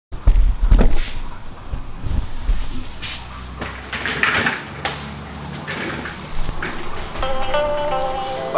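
Handling noise of a camera being moved about against clothing: rustling, scuffing and several sharp knocks and bumps, heaviest in the first second. Music with steady held notes comes in near the end.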